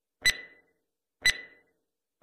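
Countdown timer sound effect: two short, sharp ticks with a brief ringing tone, one second apart, one tick per number of the count.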